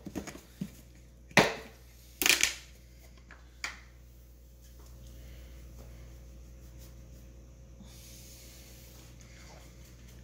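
Kitchen handling noises while sugar is measured out: a sharp knock about one and a half seconds in, then a short scraping, rustling burst just after two seconds and a smaller click a little later. After that there is only a faint steady hiss.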